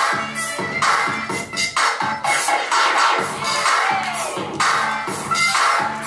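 Loud dance music with a steady, repeating beat, played over loudspeakers.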